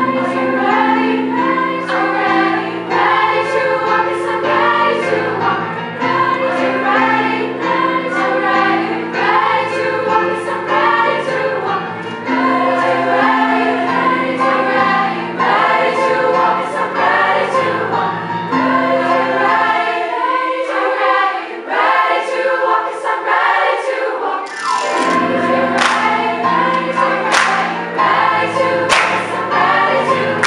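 Youth choir singing in parts, accompanied by piano. The low accompaniment drops out for a few seconds in the last third. Then sharp rhythmic hand claps join the voices.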